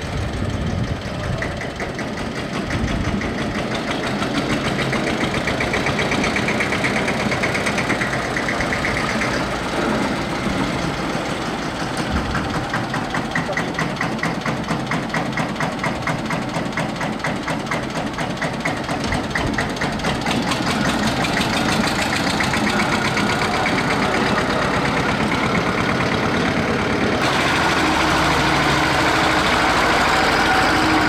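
Vintage Deutz tractor's diesel engine running with a fast, even knocking beat as the tractor drives slowly past close by.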